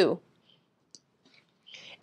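Near silence with a few faint, small clicks, one about a second in. A soft breath comes just before the talking starts again.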